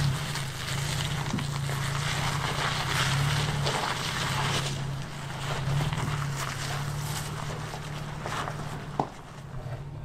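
A 2021 Toyota Tacoma's V6 engine running at a low, steady crawl as the truck picks its way over rock ledges, with a rough wash of tyre and trail noise and a few sharp clicks of rock under the tyres.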